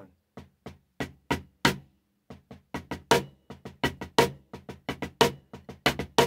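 Drum played with wooden drumsticks: repeated five-stroke rolls of inverted doubles, a cluster of quick strokes about once a second, with the second pair of doubles and the final stroke accented, so each cluster builds to its loudest strokes at the end.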